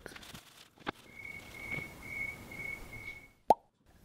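A faint, thin high tone held for about two seconds, then a single short pop with a quick upward blip about three and a half seconds in.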